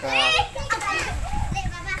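Children's voices: talking and a high call as they play in the water, with a man's voice in between.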